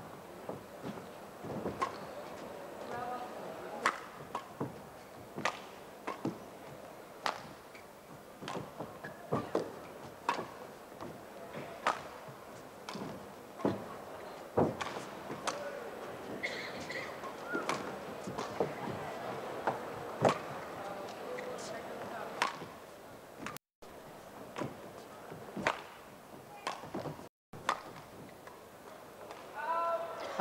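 A long badminton rally: sharp racket strikes on the shuttlecock, spaced about a second apart, over the faint murmur of a hall. The audio cuts out twice, briefly, near the end.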